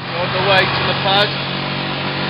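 Mototaxi's small motorcycle engine running steadily, heard from inside the cab.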